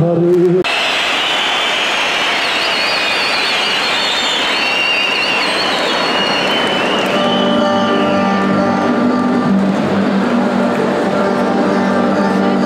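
A man's singing with bağlama cuts off within the first second. A large crowd then cheers, with high wavering cries over it, for about six seconds. Around seven seconds in, acoustic guitar and bağlama start up with held notes at several pitches.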